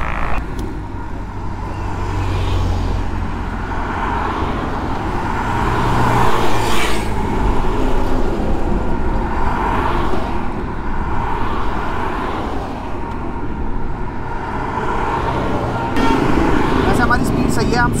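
Highway traffic going by close at hand: a steady low rumble with vehicles swishing past one after another, the loudest about seven seconds in.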